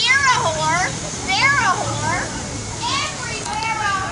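A high-pitched voice yelling in three long calls that swoop up and down in pitch.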